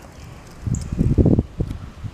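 A short, loud, low rumbling buffet on the camera's microphone, about a second long near the middle, over a quieter steady background.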